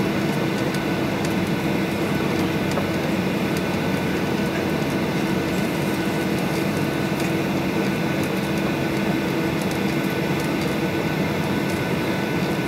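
Cabin noise inside a Boeing 737-800 taxiing: its CFM56 engines at idle with the air-conditioning hiss, a steady hum and a few faint rattles.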